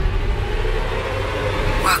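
A steady low rumble with a hiss over it, the tail of a hit that comes just before. A voice begins right at the end.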